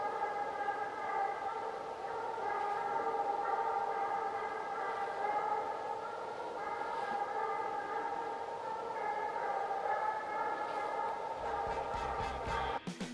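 Two Russian hounds giving tongue on a hare's trail: long, drawn-out howling voices that overlap into a steady chorus, shifting pitch every few seconds.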